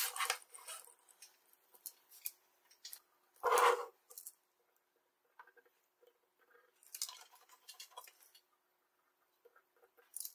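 Wire and small hand tools being handled on a bench mat: a run of clicks and scrapes at the start, a louder scraping knock about three and a half seconds in, another softer scraping spell a few seconds later, and scattered small ticks between quiet gaps.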